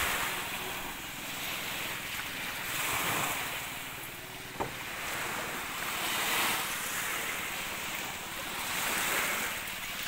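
Small waves washing in on a shallow shore, the surf swelling and fading about every three seconds, with wind on the microphone. A single sharp click about halfway through.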